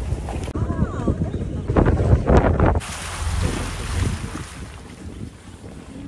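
Wind buffeting the microphone over a low rumble, as from a moving vehicle, in gusty surges; about three seconds in it drops suddenly to a quieter, steady wind hiss.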